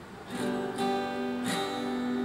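Acoustic guitar strummed by hand: three chord strums in quick succession, each left ringing.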